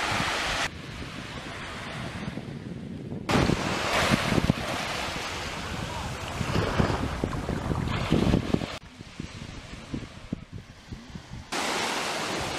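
Beach ambience: waves washing ashore and wind buffeting the microphone, with the sound changing abruptly between louder and quieter stretches several times as the footage cuts.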